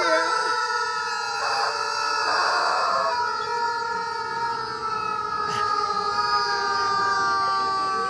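Several rubber chickens squealing at once: long, steady, overlapping tones that drift slowly down in pitch as the just-squeezed toys draw air back in.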